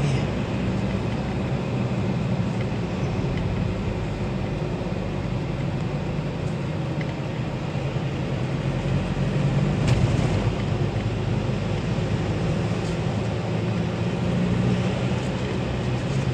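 Steady engine hum and road noise heard from inside a moving vehicle, with a brief louder burst about ten seconds in.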